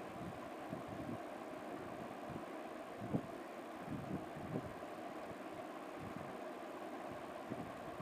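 A knife trimming dough on a metal plate: a few soft taps and scrapes of the blade against the plate, the clearest about three seconds in, over a steady faint background hiss.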